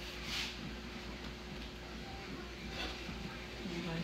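Faint voices in the background over a steady low room hum, with a short rustle under a second in.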